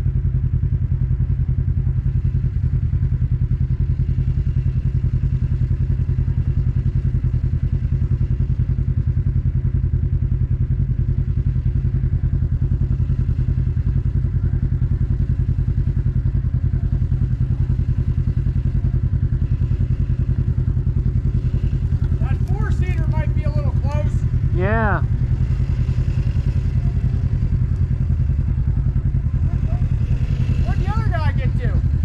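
Side-by-side UTV engine running steadily with a deep, even hum. Near the end a person's voice calls out over it with a wavering pitch.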